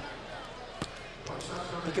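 Basketball bounced twice on a hardwood court, sharp thuds just under a second apart, over faint arena background noise: a free-throw shooter's dribbles before the shot.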